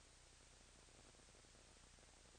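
Near silence: a faint steady hiss with a low electrical hum underneath, unchanging throughout.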